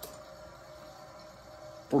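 Quiet room tone with a faint steady hum during a pause, with a man's voice starting again right at the end.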